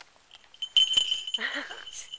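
Small falconry bells on a Harris's hawk jingling with a steady high ring as the hawk is cast off the glove and flies. The ringing starts suddenly about three-quarters of a second in.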